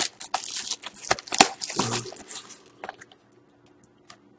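Cellophane shrink wrap being torn and crinkled off a cardboard trading-card box: a quick run of crackles and small clicks that thins out after about three seconds.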